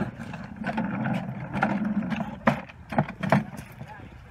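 Scuffling and rustling in a leafy hedge, then three sharp knocks about two and a half to three and a half seconds in.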